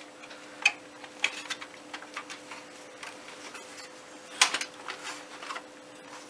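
Light scattered clicks and taps from hands handling a Dish 722 satellite receiver's chassis and front bezel while trying to pry the bezel off, with a quick run of sharper clicks about four and a half seconds in. A faint steady hum lies underneath.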